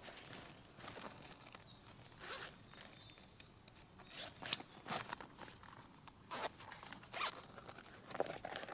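A soft fabric bag being unzipped and rummaged through: a string of short scratchy zipping and rustling sounds, a second or so apart.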